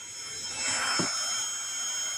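Uaoaii 21V cordless heat gun running: a steady fan whine with a rush of air that grows louder over the first second, and a short click about a second in.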